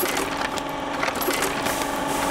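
An old book-sewing machine running, with a steady rapid mechanical clatter over a constant hum as signatures are fed onto its saddle.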